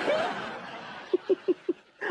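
A man's short snicker: four quick chuckles a little over a second in, over a hissing wash of noise that fades away.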